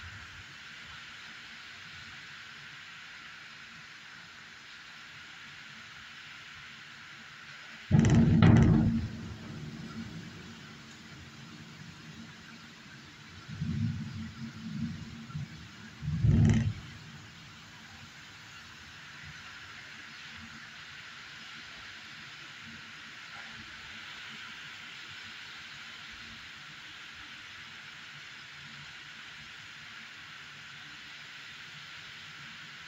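Heavy rain falling in a steady hiss, broken three times by loud, sudden low bursts: one about a quarter of the way in that fades over a second or two, a cluster of shorter pulses a little past the middle, and another sharp burst soon after.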